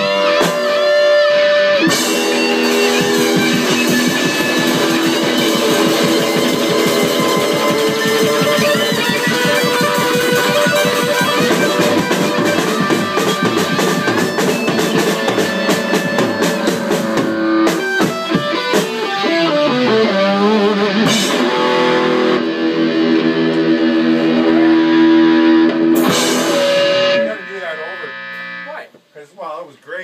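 Live rock jam on electric guitars through amplifiers, one of them a Les Paul Goldtop, with drums, played loudly. The playing stops abruptly about three seconds before the end.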